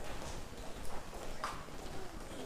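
Room sound of a seated audience in a large hall with a hard floor: low background noise with a few light knocks and taps, the loudest about one and a half seconds in.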